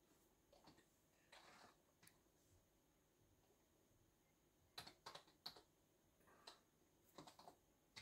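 Faint typing on a keyboard: keys tapped in short runs of a few strokes with pauses between, as a code is entered.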